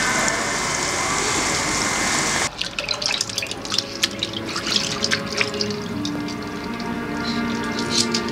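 Steady rushing, bubbling water from an aerated tank of live silver carp, cut off sharply about two and a half seconds in. Then irregular splashing and sloshing as hands scrub a fish head in a basin of water, with soft music entering underneath.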